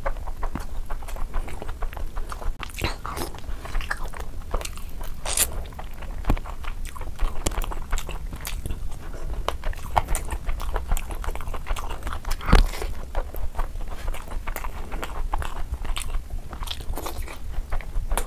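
Close-miked chewing and wet mouth sounds of a person eating rice and curry by hand, a steady run of small clicks and smacks. One louder knock comes about two-thirds of the way through.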